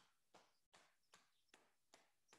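Near silence with faint, evenly spaced pats, about two or three a second: a cupped hand rhythmically tapping the upper back through clothing.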